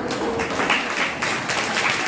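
Applause from several people clapping, starting suddenly and going on as a dense patter of claps.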